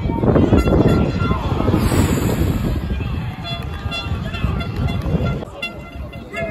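Football crowd noise: spectators along the rail shouting and cheering during an attack, loudest in the first half and then easing off. From about three seconds in, a steady higher tone with a few even pitches sounds under the crowd.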